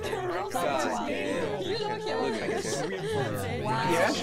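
Several voices talking over one another: overlapping speech and chatter.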